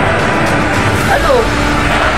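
A motor vehicle passing on the road outside, a steady rush of engine and tyre noise, with a person talking over it.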